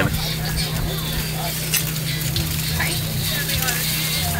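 Busy outdoor background: a steady low hum under an even hiss of noise, with faint voices in the distance.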